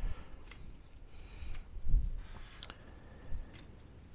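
A few faint clicks and a soft low thump about two seconds in, from a handheld battery tester being held and handled while it runs its test.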